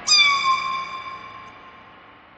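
A single high-pitched cat meow sound effect that starts suddenly, dips slightly in pitch and fades away over about a second and a half.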